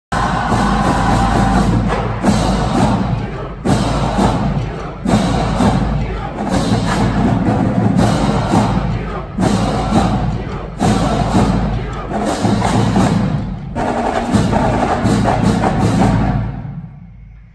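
A marching band playing loudly in a large hall, with heavy accented hits about every second and a half.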